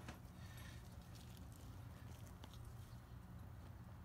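Faint sound of engine oil running from an opened Fumoto drain valve into a drain pan, over a steady low hum, with a couple of light clicks.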